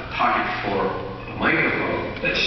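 A person's voice speaking in phrases, played over an auditorium's sound system.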